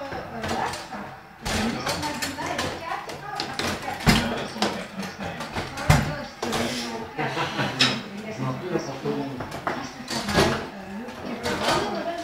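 People talking over a table-football game, with several sharp knocks from the ball and rods striking the table, the loudest about four and six seconds in.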